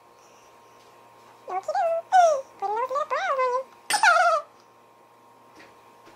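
A young girl giggling and squealing in a quick run of short, high-pitched bursts that slide up and down in pitch, starting about a second and a half in and stopping near the middle.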